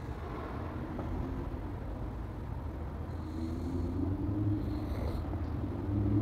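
Street traffic: a steady low rumble, with a car engine's hum growing louder in the second half as a vehicle approaches.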